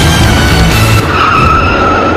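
Background music for about a second, then a car's tyres squealing: one wavering high screech that holds to the end.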